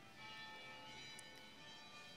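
Faint church bells ringing, many lingering tones overlapping and held steady through the pause.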